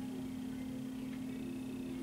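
A steady low electrical hum, one unchanging tone under faint room noise.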